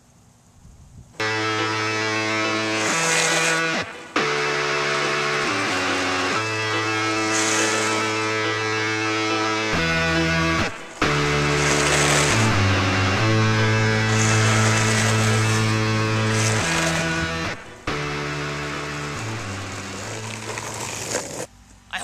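Background music: loud held chords whose notes change every second or two, starting about a second in and running until just before the end.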